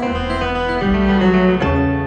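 Steel-string acoustic guitar played live, picked chords changing about every three-quarters of a second with a deep bass note under each.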